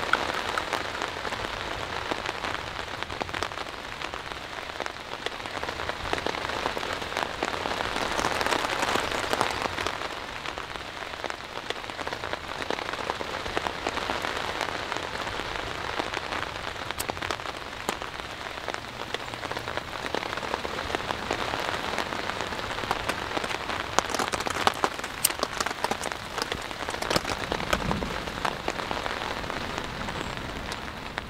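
Steady rain falling on a tarp overhead, an even hiss with scattered sharper drops striking, thickest for a few seconds near the end.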